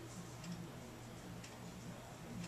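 Faint, light ticking, very roughly once a second, over a low steady hum.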